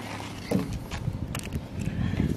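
A few light knocks and taps on a wooden cutting board as asparagus spears and a kitchen knife are handled on it, the clearest knock about half a second in.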